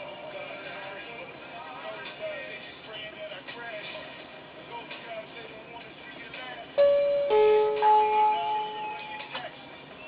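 Electronic shop-door chime going off as the entrance door opens: a sudden single tone, then a two-note chime held for about a second and a half, about seven seconds in. Background music with singing plays throughout.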